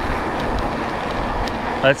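Steady rushing noise from an electric bike being ridden: wind over the microphone and tyres rolling on the road surface. A spoken word cuts in near the end.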